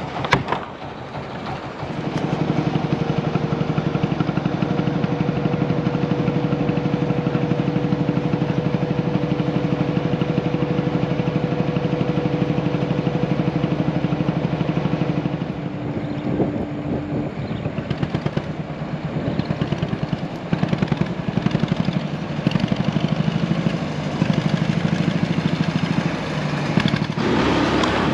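A wooden river ferry's motor running with a steady drone during the crossing. About halfway through the drone stops and gives way to a rougher, uneven engine sound that runs to the end.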